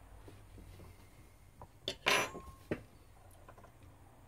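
A few small clicks and taps from hands handling the small parts of a disassembled smartphone, the loudest a short sharp click about two seconds in.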